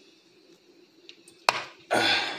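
A plastic pill vial knocking down onto a kitchen countertop: one sharp knock about one and a half seconds in, then a second knock with a brief rattle near the end.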